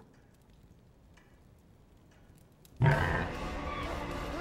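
Near silence with a few faint clicks, then a sudden loud, low-pitched hit about three seconds in that carries on as a heavy rumble: a horror-film sound stinger.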